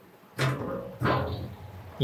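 Steel diamond-plate deck cover clanging twice as it is set back into its frame over the opening, each hit ringing on briefly.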